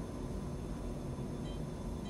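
Quiet room tone: a steady low hum and hiss with no distinct events.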